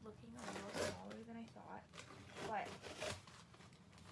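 Rustling and scraping of polyester fiberfill stuffing and a cardboard shipping box being dug through by hand, with a woman's voice in places.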